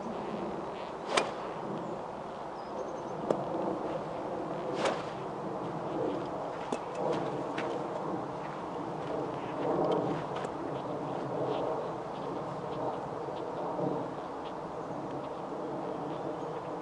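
Open-air background noise with a steady rush like wind on the microphone, broken by a few brief sharp swishes or ticks, the loudest about a second in and about five seconds in.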